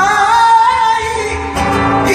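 Female flamenco singer singing por bulerías, holding one long note whose pitch wavers and bends before she moves on near the end.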